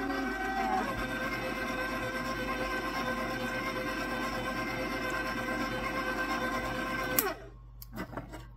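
KitchenAid stand mixer motor running steadily with a constant whine as it works a thick chocolate chip dough, then switched off about 7 seconds in, its pitch falling as it winds down.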